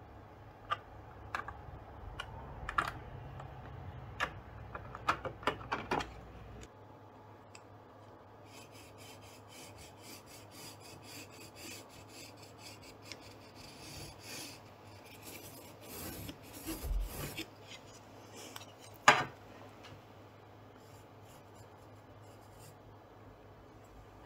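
Faint pencil marking on embroidery stabilizer stretched in a hoop. First come scattered light clicks and taps of the pencil at a plastic grid template. Then a run of quick scratchy pencil strokes drawn along a wooden ruler, and a single sharp knock a few seconds before the end.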